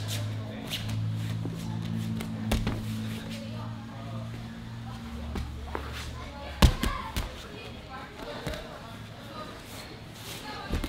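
Two grapplers in gis working a sweep on foam mats: scattered thuds of bodies and hands landing on the mat, the loudest about two-thirds of the way through, under a steady low hum.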